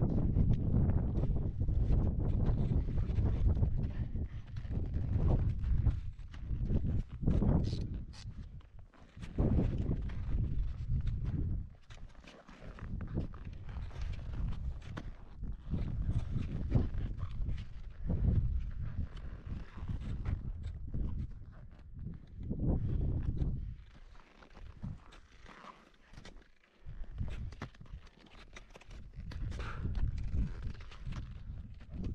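Gusting wind on the camera microphone, rising and falling, with footsteps crunching in snow and ski-pole plants as a skier hikes up a ridge on foot.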